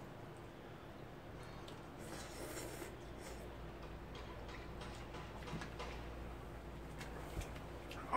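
Faint sounds of eating jjajangmyeon noodles with chopsticks: scattered small clicks of the chopsticks and short mouth noises, over a low steady hum.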